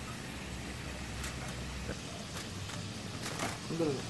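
Hot oil sizzling in a frying skillet, with light clicks of a metal slotted spoon against the pan as fried fish and potato pieces are lifted out. A low hum underneath drops away about halfway.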